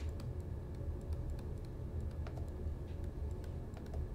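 Faint, scattered clicks and taps of a stylus on a pen tablet during handwriting, over a low steady hum.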